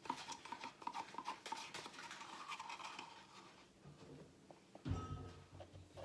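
Stir stick scraping and tapping against a plastic paint cup: rapid clicks for about three seconds that then die away, followed by a single thump about five seconds in.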